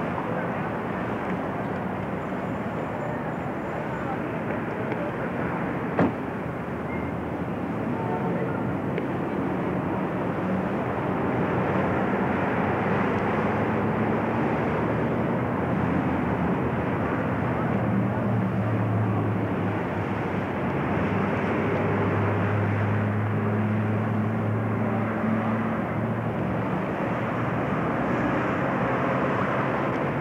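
Steady outdoor traffic noise with a low engine drone that swells through the middle and eases off near the end, as from a large vehicle or aircraft going by. A single sharp click about six seconds in.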